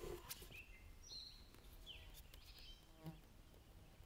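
Very quiet open-air ambience with a few short, high chirps of small birds and some faint ticks.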